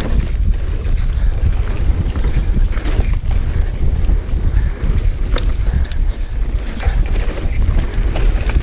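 Mountain bike riding fast down a dirt singletrack: wind buffeting the handlebar-mounted camera's microphone over the low rumble of the tyres on dirt, with scattered sharp clicks and rattles from the bike.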